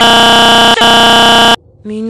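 Harsh, very loud electronic buzzing tone held at one flat pitch, edited in as a sound effect; it breaks for an instant less than a second in and cuts off abruptly about one and a half seconds in.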